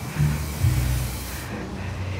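Fog machine blowing out a burst of fog with a loud hiss that cuts off suddenly about one and a half seconds in, over a low drone.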